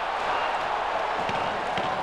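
Hockey arena crowd noise, a steady even hubbub without a rise into cheering, just after a goal by the visiting team.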